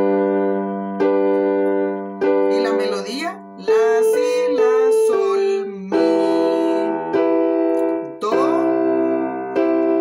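Keyboard with a piano sound playing a slow introduction in E minor, C and G major block chords. The chords are struck about a second or two apart, and each is left to ring before the next.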